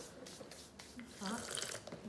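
Soft rustling of a rolled pita-bread wrap being handled and turned in the hands, with a few faint light clicks and a short spoken word about a second in.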